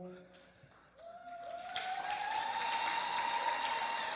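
Audience applause after a man's singing stops, building from about a second in and holding steady, with a faint high thin tone rising and then holding over it.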